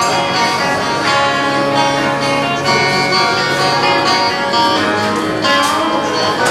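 Electric guitar playing in a live rock band's instrumental passage without vocals, with held notes and a short bend near the end.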